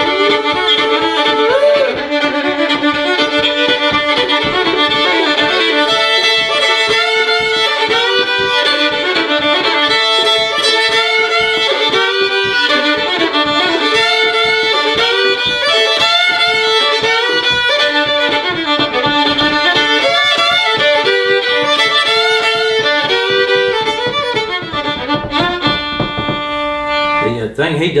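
Two fiddles playing an old-time fiddle tune together, bowed at a lively pace, ending on a held note near the end.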